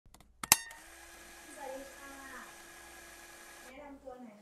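A sharp click about half a second in, then a steady hiss with a faint low hum and brief faint speech in the background; the hiss cuts off shortly before the end.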